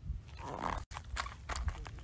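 A few sharp clicks and knocks, with a soft rustling patch about half a second in, over a steady low rumble.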